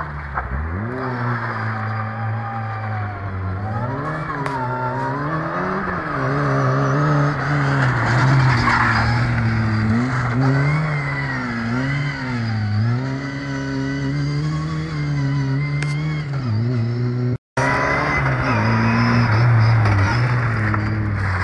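Lada 2107's four-cylinder engine revving up and down over and over as the car is driven hard, the pitch climbing and dropping every second or two. The sound cuts out for a split second near the end.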